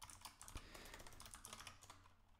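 Faint typing on a computer keyboard: a quick, uneven run of key clicks as a short terminal command, "make run", is typed.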